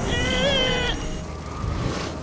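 A short, high-pitched wordless cry from a cartoon character, held for under a second with a slight wobble in pitch.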